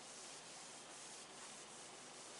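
Faint rubbing of a cloth duster being wiped across a whiteboard to erase marker writing, in soft irregular strokes.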